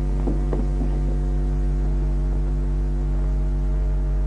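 Steady low electrical hum with a stack of even overtones, the mains hum carried on an old film soundtrack. A couple of faint brief sounds come about half a second in.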